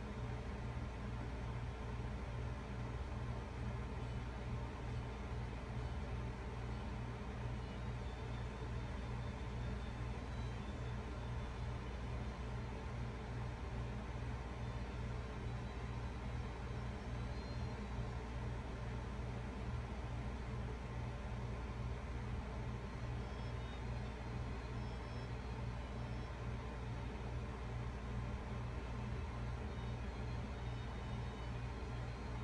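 Steady low hum with a faint regular pulse in it and a light hiss above; no other events.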